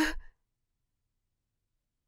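A woman's soft voice trailing off in the first moment, then dead silence.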